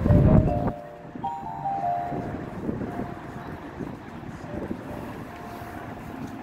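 Marching band playing: a loud full-ensemble hit with drums, then quieter sustained notes, with wind buffeting the microphone.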